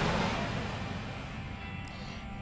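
Hot-air balloon propane burners firing during a balloon glow: a loud rush of noise at the start that fades away over about two seconds as the burners shut off. Faint music sits underneath.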